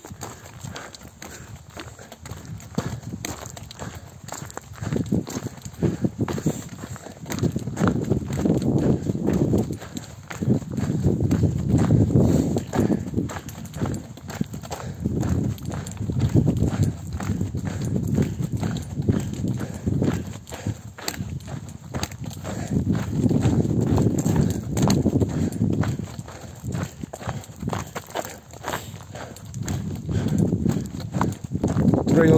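Steady footsteps crunching on a loose gravel and stone track, in an even rhythm, under a low rumbling that swells and fades every few seconds.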